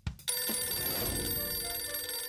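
A telephone bell ringing, starting about a quarter second in and ringing steadily.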